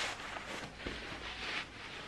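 Hanhaba obi fabric rustling and swishing as the knot is pulled tight and the obi ends are handled, with the strongest swish about a second and a half in.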